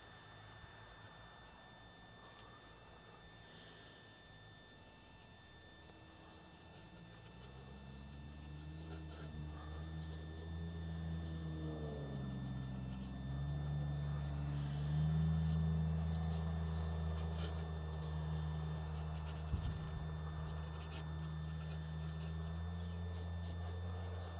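A low droning hum fades in about seven seconds in, dips in pitch around the middle, then holds steady and louder.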